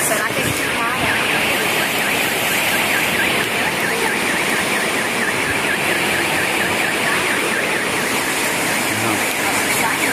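Floodwater rushing in a loud, steady torrent, with a car alarm's high warble repeating rapidly over it.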